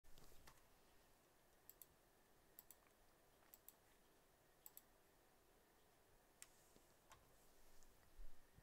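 Near silence: faint room tone with small sharp clicks, four quick double clicks spaced about a second apart, then a couple of single clicks near the end.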